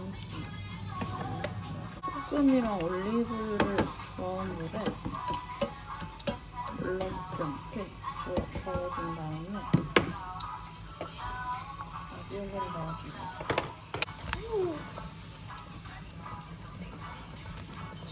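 Background music with a singing voice gliding up and down, and a few sharp clicks.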